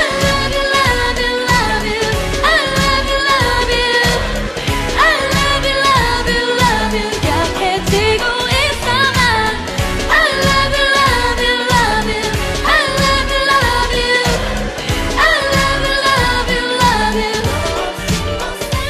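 K-pop song with a female lead vocal over a steady dance beat.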